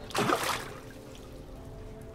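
A short splash near the start as a largemouth bass is let go from a hand at the water's surface and swims off.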